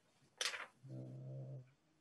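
A quick intake of breath, then a low voice holding a steady, unchanging hum for just under a second.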